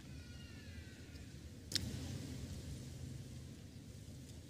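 Quiet hall room tone with a steady low rumble, a faint high falling tone in the first second, and one sharp click a little before the middle.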